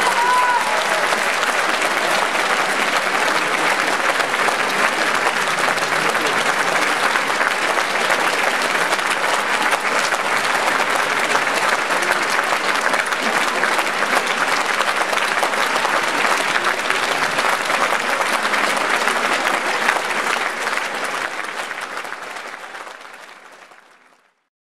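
Concert-hall audience applauding steadily after a performance, fading out over the last three seconds or so.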